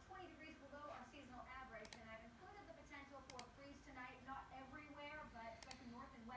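Faint voice talking in the background, with sharp double clicks of a computer mouse three times: about two seconds in, at three and a half seconds, and near the end.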